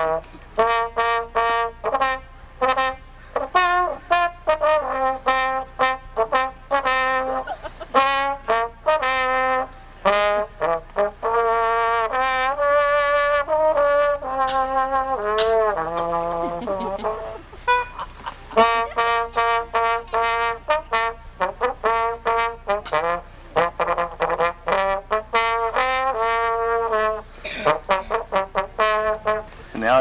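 Slide trombone fitted with three bells playing a lively tune, mostly quick short notes with some longer held ones, and a slide down in pitch about halfway through.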